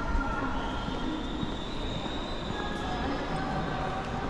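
Train wheels squealing on the rails: long, high squealing tones that shift in pitch every second or two, over a low rumble.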